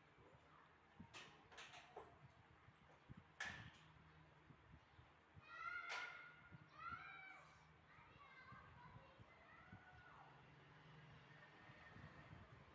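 Near silence over a low steady hum, broken by a few faint clicks in the first few seconds and a faint, high-pitched voice calling out around the middle.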